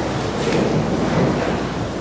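A congregation sitting down in church pews after standing: a steady rustle and shuffle of clothing, bodies and wooden seats.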